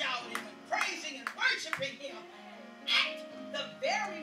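Church worship music: a woman's voice through a microphone over held instrumental chords, with a few scattered hand claps.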